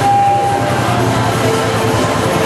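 Music from a parade band, with several held notes over the busy noise of a street crowd and passing vehicles. A single clear high note is held briefly at the start.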